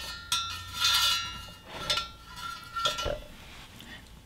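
Aluminium tent pegs knocking and scraping through the holes of a thin stainless steel utensil-strainer hobo stove. The steel can rings for over a second after a sharp knock early on, with softer clinks later and a short knock near the three-second mark.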